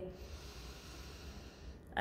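A woman taking one long, deep breath in: a faint, steady rush of air lasting nearly two seconds.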